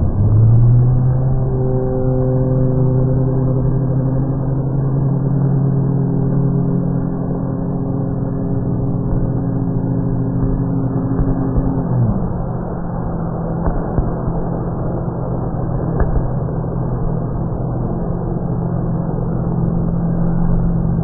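Loud, steady rumble of a stadium during a pyrotechnics display, overlaid by a held low chord that slides down in pitch and cuts off about twelve seconds in, after which a lower steady hum continues.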